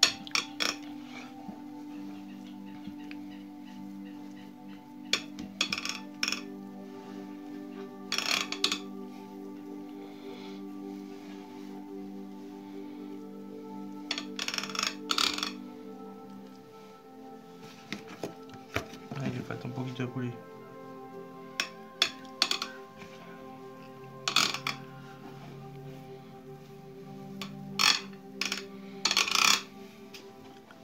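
A spoon clinking and scraping against a glass baking dish in short, irregular bursts as mashed potato is spread over the filling, over steady background music.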